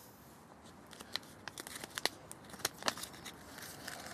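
Small plastic tackle packet crinkling in the hands as a length of rig sleeve is taken out of it: a run of quick, irregular crackles and clicks.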